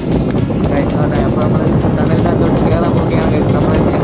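Car driving at road speed, heard from inside the cabin: steady road and engine noise, with a voice over it.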